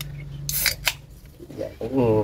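Aluminium drink can pulled open: a short crack and hiss of escaping gas about half a second in, then a single click from the tab. The drink is carbonated.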